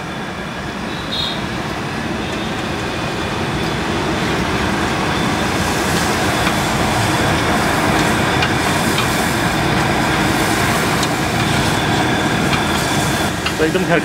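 Butter sizzling on a large hot flat griddle (tawa) around a stuffed paratha, the steady sizzle building up gradually over the first several seconds and then holding.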